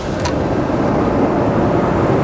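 Steady low rushing air noise of a paint spray booth's ventilation and extraction running as the booth door is pulled open, with one faint click of the door latch just after the start.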